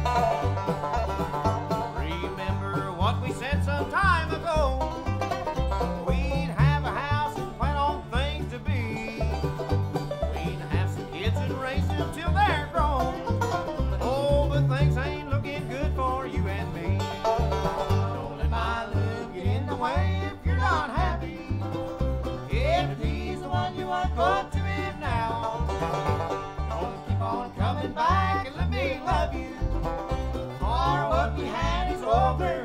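Bluegrass band playing an instrumental passage: five-string banjo, mandolin and acoustic guitar over an upright bass keeping a steady beat.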